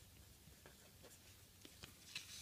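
Faint scratching of a pen writing on paper: a few light strokes finishing a word, then the pen lifts off.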